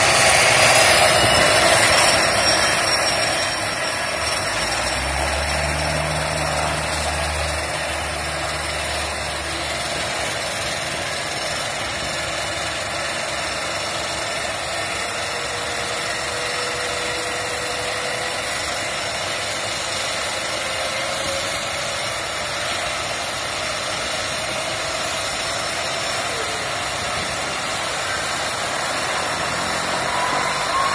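Pratt & Whitney PT6 turboprop engine of a Quest Kodiak spooling up during start: its turbine whine rises over the first couple of seconds, then holds as a steady high whine as the engine settles at idle with the propeller turning.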